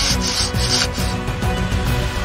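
Paintbrush bristles scrubbing back and forth over wooden popsicle-stick slats, about four strokes a second, stopping about a second in. Background music with a steady beat plays under it.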